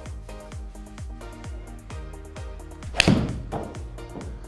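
Sharp, loud strike of a Titleist T300 game-improvement iron hitting a golf ball at full swing, about three seconds in, with a short ring after it. Background music with a steady, evenly repeating beat plays throughout.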